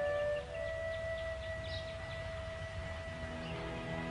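Soft flute music: one long held note, with other notes coming back in near the end.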